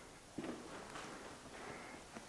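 Quiet room tone with one faint soft thump a little under half a second in.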